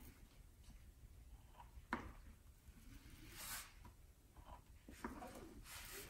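Near silence, with faint scraping of a wooden stick pushed over resin-soaked carbon fiber cloth, and a light tap about two seconds in and again about five seconds in.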